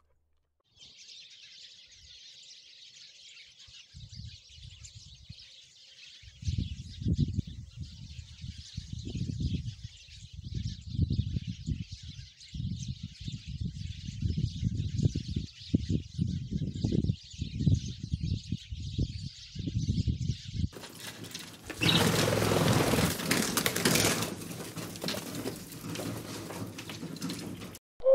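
A flock of house sparrows chirping continuously, with low fluttering bursts of wingbeats coming and going from about four seconds in. At about 21 seconds a louder rushing noise covering the whole range takes over.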